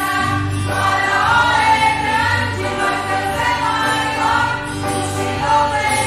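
A small mixed church choir of men's and women's voices singing a hymn together, steadily throughout, with women's voices the most prominent.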